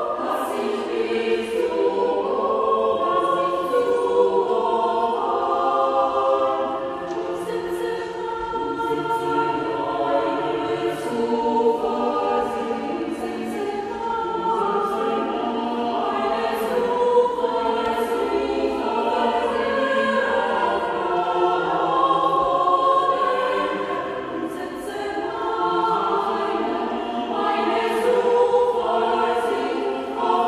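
Mixed choir of women's and men's voices singing in several parts with sustained notes.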